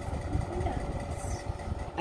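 Low, uneven rumbling handling noise as a doll is lifted and moved close to the recording phone, over a faint steady hum.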